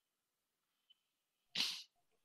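Near silence, then a single short, sharp breath noise from a person over the call audio, about one and a half seconds in.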